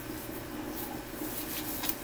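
Purple nitrile exam glove being pulled onto a hand: faint rubbery rustling, with a brief sharper sound near the end, over a low steady room hum.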